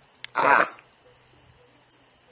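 Crickets or similar insects trilling steadily in the grass, a thin high continuous note, with a short loud burst of noise about half a second in.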